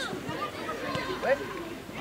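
Only speech: faint, distant chatter of players and spectators on a football pitch, with a short "ouais" about a second in.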